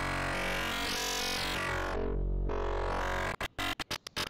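ZynAddSubFX frequency-modulation synth holding one low buzzing note, its upper harmonics swelling brighter and then dulling again as the FM gain is changed. About three seconds in the note cuts off and breaks into a run of short stuttering clicks, the sign of the software's audio dropping out under CPU overload.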